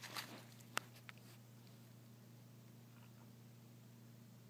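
Near silence over a steady low hum, with a brief faint rustle at the start, one sharp click a little under a second in and a fainter tick just after it.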